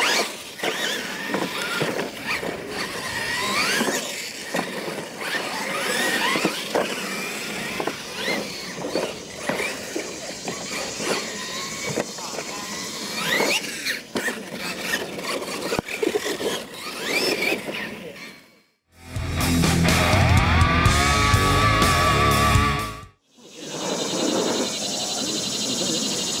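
Electric Losi LMT RC monster trucks racing: their brushless motors whine in many rising and falling glides as the throttle goes on and off, with scattered knocks. About three-quarters of the way in, the whine breaks off for a few seconds of music, then returns near the end.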